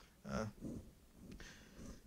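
A man's hesitant "uh", then a faint breath drawn in near the end.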